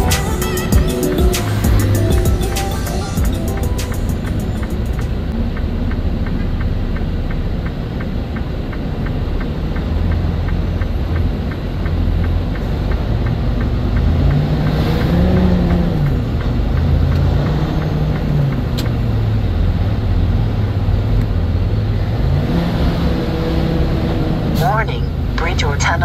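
Semi-truck diesel engine running, heard from inside the cab as the truck drives, its pitch rising and falling several times in the second half. Background music fades out in the first few seconds.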